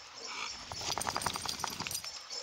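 A bullmastiff panting rapidly close by: a quick, even run of short breaths, about eight a second, starting a little before a second in.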